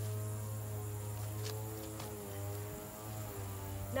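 A steady droning hum made of several held tones, which sag slightly in pitch about halfway through, with two faint clicks in the middle.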